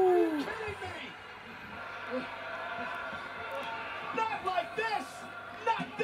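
The end of a man's long 'woo' whoop, falling in pitch over the first half second, then faint speech in the background.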